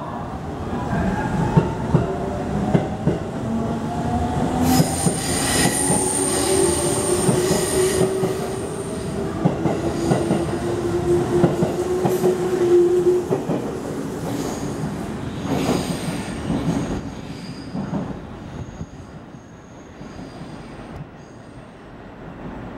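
JR Central 373 series electric multiple unit pulling out of the station: its motor whine rises in pitch as it gathers speed, and the wheels click over the rail joints. A thin high squeal comes in briefly about five seconds in, and the sound fades in the last few seconds as the train leaves.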